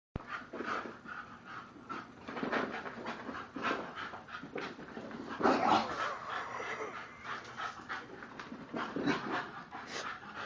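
A bulldog puppy panting in quick, irregular breaths as it runs about.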